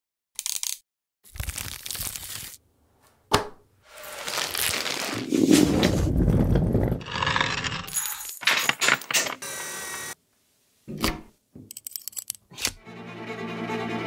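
A string of short sound effects separated by abrupt silences: clicks, a sharp crack, and rustling, crackling bursts. Bowed-string music rises in over the last second.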